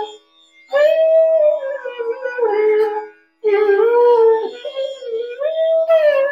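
Bansuri (bamboo transverse flute) playing two phrases of Raga Kedar, the notes gliding into one another as the line comes down, over a steady drone tone. The flute breaks off briefly about half a second in and again just after three seconds.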